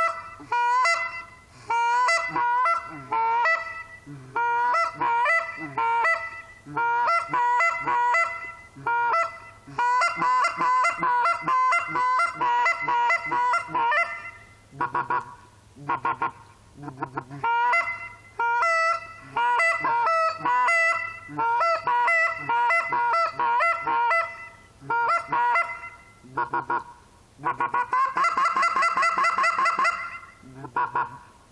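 Hand-blown Canada goose call sounding a string of imitation honks and clucks, each note breaking in pitch, with fast rolling chatter runs about a third of the way in and again near the end.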